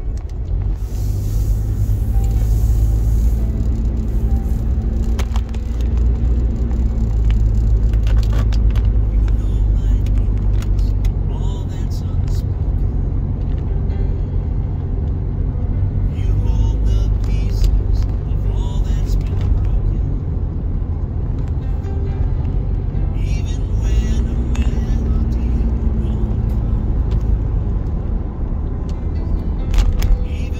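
Steady low rumble of a car's engine and tyres heard from inside the cabin while driving, with music and a voice playing over it.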